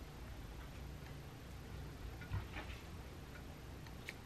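Faint light clicks and rustling as knit fabric is handled and sewing clips are put on its edge, a few clicks bunched together about halfway through, over a low steady room hum.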